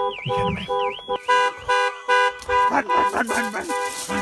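Car alarm siren sounding with a fast wail that rises and falls about three times a second. The wail stops a little over a second in, while a steady pulsing alarm tone carries on. Short irregular calls come in during the second half.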